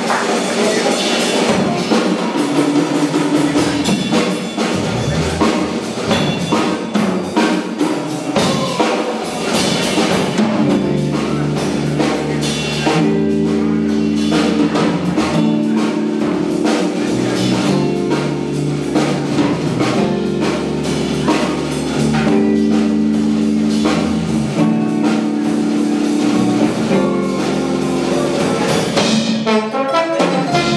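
Live band playing the instrumental opening of a cumbia-jazz arrangement: drum kit and percussion with trombone. Electric bass and sustained chords come in about ten seconds in.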